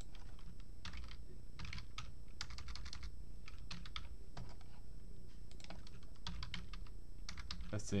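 Computer keyboard typing: short, irregular bursts of keystrokes with brief pauses between them.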